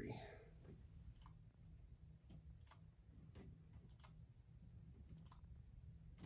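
Faint computer mouse clicks, irregular and about one a second, each placing a point of a field boundary on a map.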